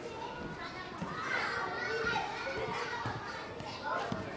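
A babble of many children's voices chattering and calling at once, with no single clear speaker.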